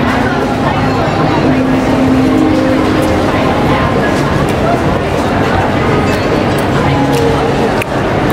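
Busy city street ambience: voices of passers-by, traffic, and background music with some long held notes, at a steady level.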